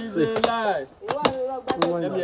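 Green coconuts being hacked open with a blade: sharp, irregular chopping strikes about twice a second, over several people's voices.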